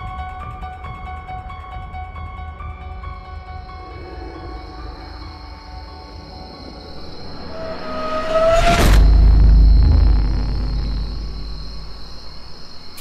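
Horror film score with held, steady notes, then a rising swell into a loud low boom about nine seconds in. The boom's deep rumble fades over the next two seconds.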